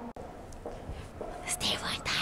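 A woman whispering breathily close to the microphone, the breathy hiss growing stronger in the last half second.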